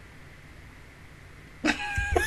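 Faint steady room hiss, then about a second and a half in a woman's sudden high-pitched squeal or gasp that breaks into laughter.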